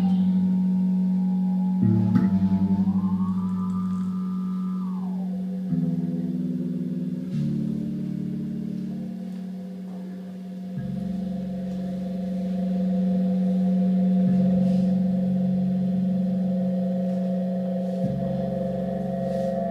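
Live improvised music on keyboard and fretless electric bass: long held, layered drone tones. About two seconds in one tone glides up, holds, and slides back down near five seconds; after that the held notes shift every second or two.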